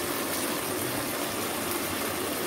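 Fish curry sizzling steadily in oil in an open kadai, its water cooked off so the gravy has dried down.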